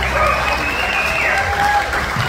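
Audience applauding, with a high voice cheering over the clapping.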